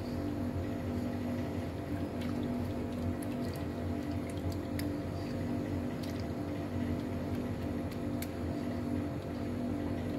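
Background music over a wire whisk beating condensed milk and milk in a pot, with scattered light clicks of the whisk against the pan.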